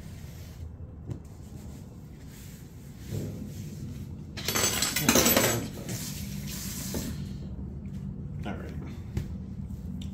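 Sponge wiping flour and dough scraps off a kitchen countertop, faint rubbing and scraping. About four and a half seconds in, a louder rush of hissing noise lasts about two and a half seconds.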